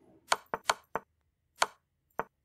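Five sharp clicks, irregularly spaced over about a second and a half, as moves are stepped back on a computer chess board.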